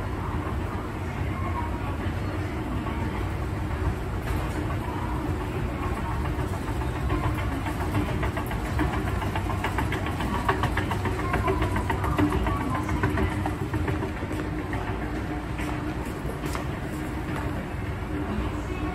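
Passenger conveyor running: a steady machine hum with a constant tone, and a regular clatter of steps or pallets that grows more prominent midway through and then eases off.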